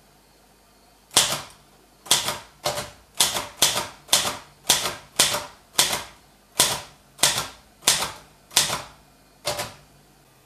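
Manual typewriter typing slowly: about fourteen separate key strikes, type bars hitting the platen through the ribbon, unevenly spaced at roughly one every half second to a second.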